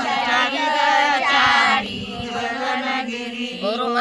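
Group of women and a girl singing a Marathi devotional abhang together, with a short break between sung phrases about halfway through.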